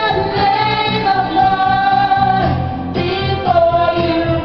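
Karaoke singing into a microphone over a recorded backing track, with long held notes.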